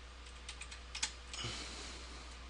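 Faint computer keyboard typing: a few separate key clicks, then a short soft rustle about one and a half seconds in.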